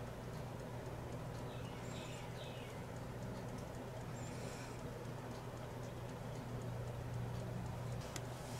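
Faint handling sounds of a gel polish bottle: the brush scraped against the bottle neck and dabbed onto a makeup sponge, then the cap screwed on, a few light scratches and clicks over a steady low hum.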